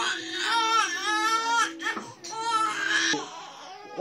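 Baby crying in several high, rising-and-falling wails that stop suddenly about three seconds in.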